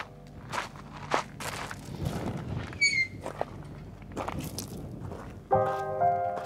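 Footsteps on gravelly desert ground, an irregular series of short steps with one brief high squeak about halfway through.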